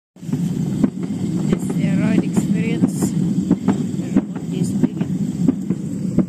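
Wheels of a homemade wooden wagon rolling on a concrete sidewalk while being towed behind a bicycle: a steady low rumble with repeated sharp knocks.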